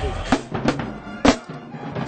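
Marching band drums being struck: a few separate sharp drum strokes, the loudest a little past one second in.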